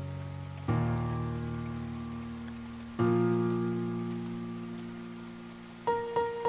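Solo piano playing slow chords, one struck about a second in and another about three seconds in, each left to ring and fade, over a steady sound of rain.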